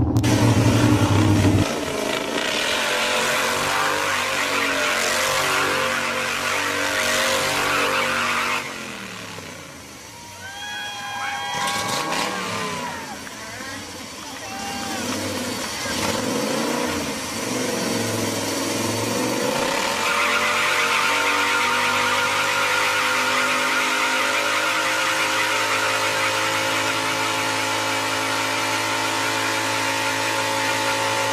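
A motor vehicle's engine running hard, its pitch stepping up and down. It drops away about ten seconds in, comes back with rising and falling pitch, and holds a steady high pitch through the last third.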